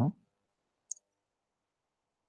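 The end of a man's spoken word, then near silence broken once, about a second in, by a single short, high click.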